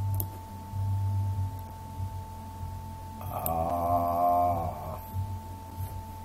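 A man's voice humming one drawn-out "hmm" while thinking, starting about three seconds in and lasting nearly two seconds, over a faint steady electrical whine.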